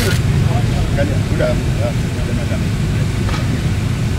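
Steady low rumble inside a car's cabin, with faint, muffled voices talking in the background.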